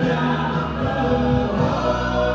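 A live country band plays with several voices singing held notes in close harmony over acoustic and electric guitars and electric bass. The chord changes a little past halfway.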